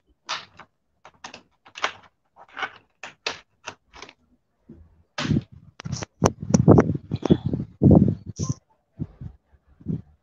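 Handling noise on a phone's microphone as the phone is moved and put on charge: a string of short taps and clicks, then louder bumps and rustles from about five to eight seconds in.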